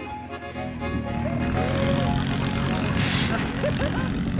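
Low engine rumble of the vehicle towing the snow tubes on ropes, building from about a second in, with faint held musical tones and a few short vocal cries over it.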